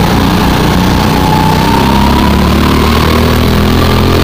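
Go-kart's small engine running loud and steady at speed, its pitch rising gently as it accelerates through the middle.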